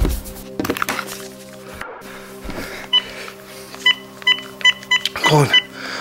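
Cordless phone keypad beeping as a number is dialled: a single beep about three seconds in, then a quick run of about five more identical beeps.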